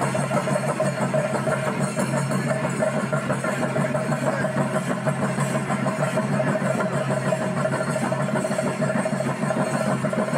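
Loud live music for a ritual dance: a steady droning tone under busy percussion.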